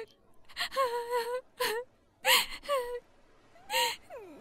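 A cartoon character crying: about five short, breathy, high-pitched sobs and whimpers with wavering pitch, separated by brief quiet gaps.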